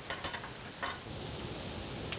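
Chopped onions sizzling in hot oil in a frying pan, a steady hiss, with a few short clinks and scrapes from the pan and utensil near the start and about a second in.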